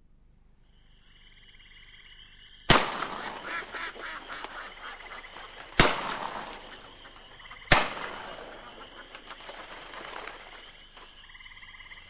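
Three sudden loud bangs, each followed by a few seconds of crackling noise that dies away. The first comes about a third of the way in, the next two about three and then two seconds later.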